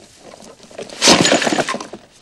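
A plastic grocery bag giving way and its groceries crashing onto the ground: a sudden clatter of several impacts about a second in, lasting under a second.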